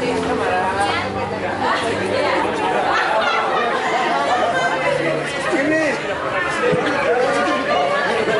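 Several people talking over one another: steady group chatter.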